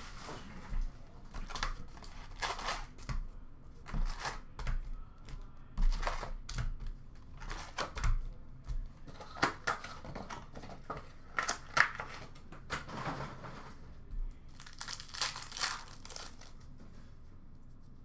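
Packaging of hockey card retail boxes and packs crinkling and tearing as they are opened, in irregular crackles and rips of varying loudness.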